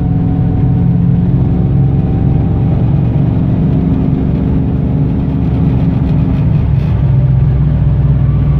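1997 Pontiac Trans Am WS6's LT1 V8 pulling under throttle through an aftermarket Borla exhaust, heard from inside the cabin at highway speed. The engine drone rises slowly with the revs, then eases back near the end.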